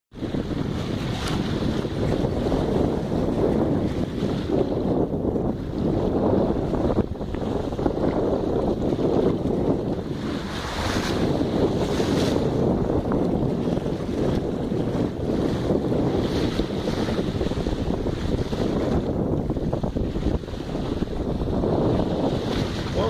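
Wind rushing over the microphone on top of water washing along the hull of a moving boat, a steady noisy rush with brief gusts.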